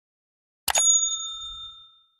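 A click followed by a single bright bell ding that rings for about a second and fades: the notification-bell sound effect of a subscribe-button animation.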